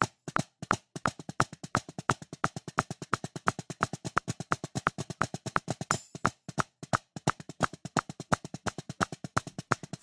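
Drumsticks on a practice pad playing a fast flam combination rudiment: a dense, even stream of sharp strokes with accents, with a brief break around seven seconds in.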